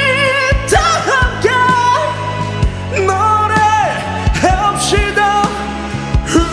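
A man singing a Korean pop ballad over a karaoke backing track, with long held notes sung with vibrato.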